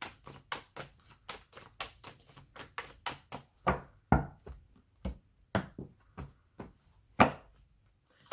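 A tarot deck being shuffled by hand: a quick run of soft card slaps, about five a second, then slower, louder taps of the cards from about halfway in.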